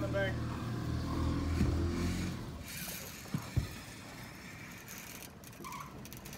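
Outboard boat motor running low and steady, easing off about two and a half seconds in, followed by two short knocks close together.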